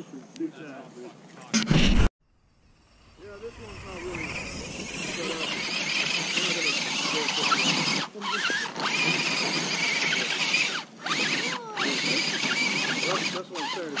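Scale RC rock crawler's electric motor and geared drivetrain whining and squealing, the pitch rising and falling quickly with the throttle as it claws up a slick, muddy slope, stopping briefly several times. A short loud burst about one and a half seconds in cuts off abruptly.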